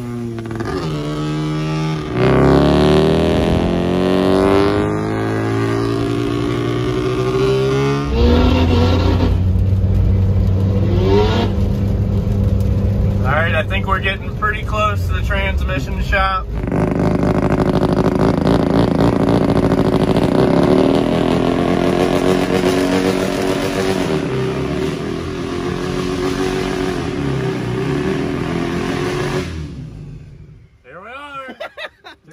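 A van's engine pulling away and accelerating, its pitch rising in sweeps that drop back twice as it shifts up, then running more steadily at cruise. The sound falls away right at the end as the van stops.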